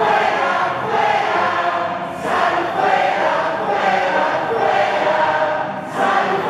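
A large congregation singing together in unison, many voices at once. There are short breaks between phrases about two seconds in and again near the end.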